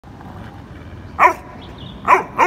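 A dog gives one short, sharp bark about a second in, during a rope tug-of-war game between two dogs: a play bark.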